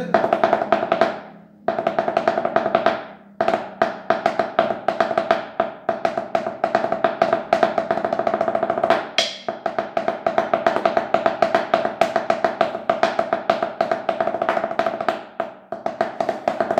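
Wooden drumsticks playing a tarola (banda snare drum) muffled under a towel: a plain ranchero beat in three with dense, evenly spaced strokes over one ringing drum tone. It breaks off twice within the first few seconds, then runs on steadily.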